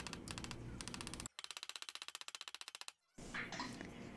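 Nylon hammer tapping lightly and rapidly on a sterling silver cuff over a steel concave bracelet forming die, about ten faint taps a second, which stop about three seconds in.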